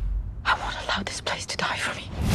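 A voice whispering a few short words from about half a second in, over a faint low rumble, in a film trailer's soundtrack.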